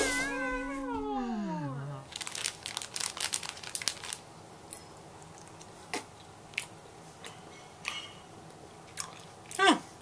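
A pitched tone glides downward and dies away in the first two seconds. Then come scattered crackles and sharp clicks of a candy wrapper being handled and Swedish Fish gummy candy being chewed, thickest between about two and four seconds and sparser after.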